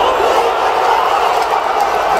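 A football stadium crowd roaring and cheering: a loud, dense mass of shouting voices.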